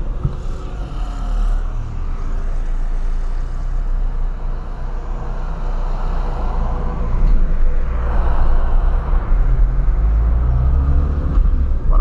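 Ford Fiesta Supercharged's 1.0-litre supercharged Zetec Rocam engine running under way, with road noise, heard from inside the cabin; it gets somewhat louder in the second half.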